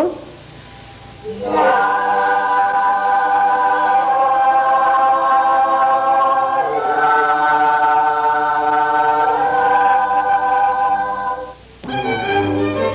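A class of schoolchildren singing a four-part chord sequence a cappella as a choir, slow and grand. After a short hush they hold one long chord, move to a second chord about halfway through, and hold it until they stop just before the end.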